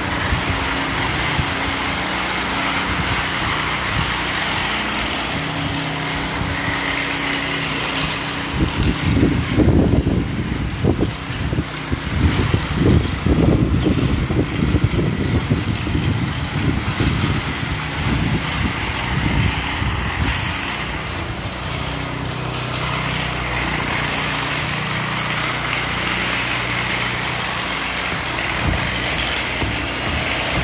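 Steady engine drone with a constant hiss under it; from about eight seconds in to about twenty-two seconds, irregular low rumbling comes and goes over it.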